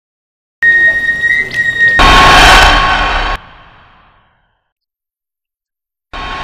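Dubbed-in film sound effect: a steady high beep-like tone for about a second and a half, cut off by a loud noisy hit that dies away over about a second.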